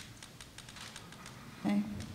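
Quiet hall room tone with faint, scattered clicks and rustles from the audience.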